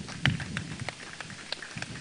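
A few scattered hand claps, irregular sharp clicks, over a faint low murmur.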